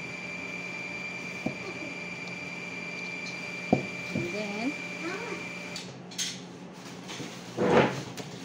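A metal tube cake pan knocking against a cooking pot as it is handled and set down: a light knock and then a sharper, louder one a couple of seconds later. Beneath them a steady high whine runs and cuts off suddenly a little before the end.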